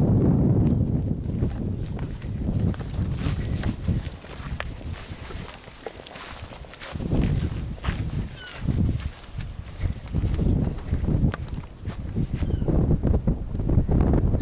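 Irregular footsteps crunching through grass and brush, with wind rumbling on the microphone.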